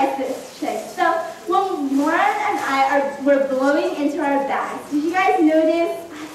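Speech: a female voice talking throughout.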